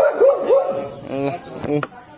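A dog barking a few times in quick succession near the start, followed by a man's voice.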